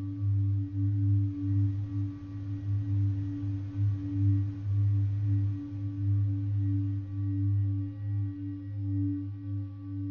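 Ambient drone music: a deep, steady hum with a second, higher held tone above it, swelling and fading slowly in loudness, like a singing bowl.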